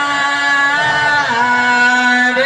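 Male voices singing a chant-like lament into microphones, holding long wavering notes; the note steps down a little past the middle.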